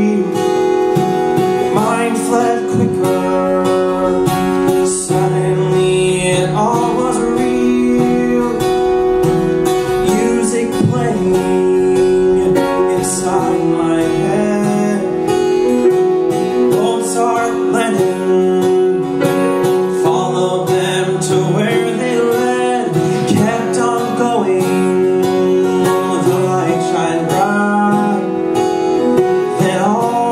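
A man singing a musical-theatre duet number live on stage, over steady live band accompaniment.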